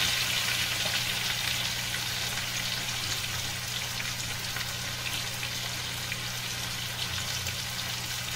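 Diced potatoes with cumin seeds frying in oil in a black kadai, a steady sizzle that slowly softens, over a low steady hum.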